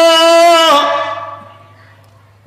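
A man's voice holding one long, steady chanted note through microphones and loudspeakers. It ends about three quarters of a second in and dies away in echo over about a second, leaving a low electrical hum.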